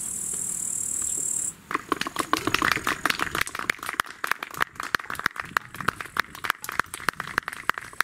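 Steady high insect hiss from the grass, cut off suddenly about a second and a half in by a rapid, irregular clatter of sharp clicks that keeps going.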